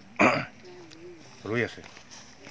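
A man clears his throat once, a short sharp burst about a fifth of a second in, then a brief spoken syllable follows near the end.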